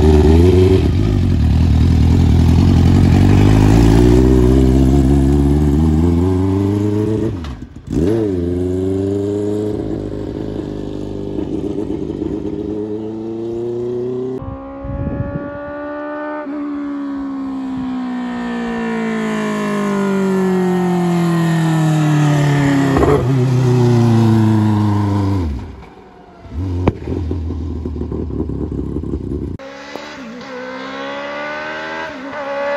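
Dwarf race car with a Suzuki GSX-R1000 motorcycle engine, heard in several short clips. The engine revs hard, then pulls away with its pitch climbing in steps through the gear changes, followed by a long drop in pitch as the car runs off down the road.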